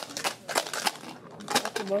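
Dice rattling inside a red plastic shaker cup as it is shaken by hand for a Bầu cua cá cọp round, a quick run of sharp clicks, then the cup is set down on the table near the end.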